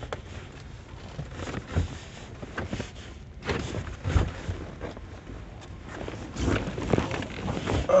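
Handling noise inside a car: scattered soft knocks and rustles at uneven intervals over a low rumble.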